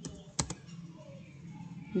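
Typing on a computer keyboard: about three sharp key clicks in the first half second, then only a low background hum.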